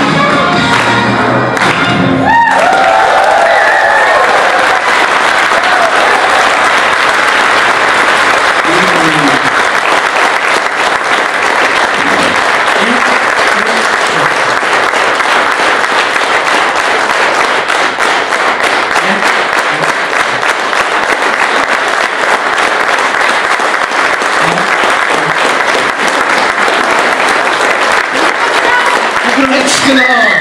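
Music with singing ends about two seconds in, and a standing audience then applauds steadily to the end, with a few voices calling out now and then.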